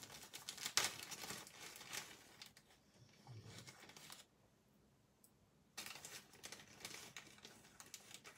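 Dry crinkling and rustling as dried chamomile is handled, made of irregular small crackles and clicks. It stops for about a second and a half in the middle, then starts again.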